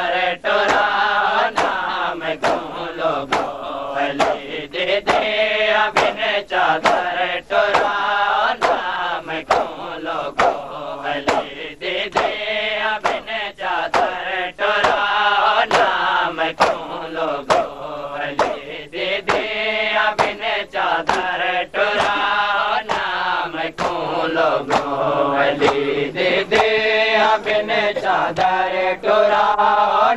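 A group of men chanting a Shia noha lament in unison, over a steady beat of open hands striking bare chests (matam).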